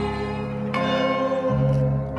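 Bronze church bells in a belfry struck by hand, ringing on with a fresh strike about three quarters of a second in, over a band accompaniment of keyboard and bass.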